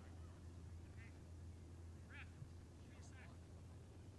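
Faint open-air ambience: a low steady hum with a few short, distant calls, about three in all, from voices or waterfowl that can't be told apart.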